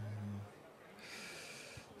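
A man's low hummed 'mm', held steady and ending about half a second in, then a noisy breath into the microphone from about one second in.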